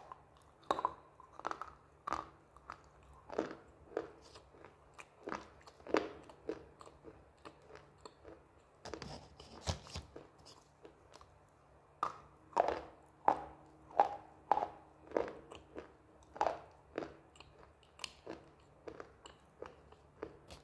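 Close-up chewing of a hard, crunchy slate-type pica item: a quick run of crisp, irregular crunches. The crunching comes thickest a little before the halfway point and through much of the second half.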